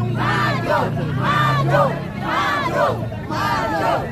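Crowd of protesters chanting a slogan in unison, loud voices rising and falling in a quick repeated rhythm of about two shouts a second.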